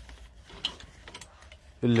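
Metal clothes hangers sliding and clicking along a metal clothing rail as a hand pushes garments aside, with a few sharp clicks. A man starts speaking near the end.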